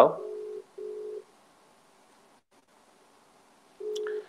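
Telephone ringback tone: a low, steady tone in a double-ring pattern. Two short beeps, a pause of about two and a half seconds, then two more beeps near the end, the sound of a call ringing out unanswered.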